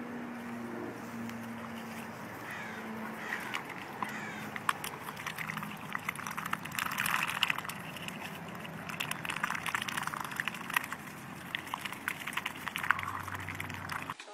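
Ducks dabbling their bills in the juicy flesh of a hollowed-out watermelon half, making rapid wet clicks and slurps.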